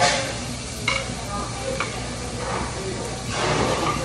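Food sizzling, a steady hiss, with a louder rush of it near the end.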